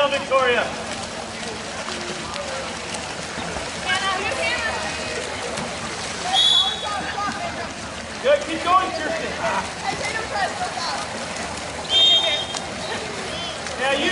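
Scattered shouting and calling voices of players and spectators across an outdoor pool during a water polo game, over a steady background of water splashing.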